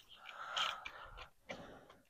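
A person's faint breath between words, followed by a soft click about a second and a half in.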